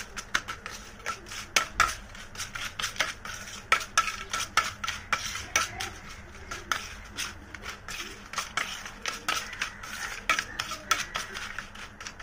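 Steel spoon stirring through a wet mix of crushed slate pencils in a stainless steel plate, scraping and clinking against the metal in quick, irregular ticks, several a second.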